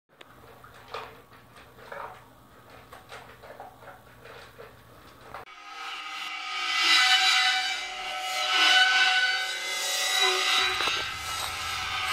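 Wild rabbit caught in a wire fence, screaming in distress: a loud, shrill, sustained cry that starts suddenly about five seconds in and goes on, after a few seconds of faint rustling and clicks.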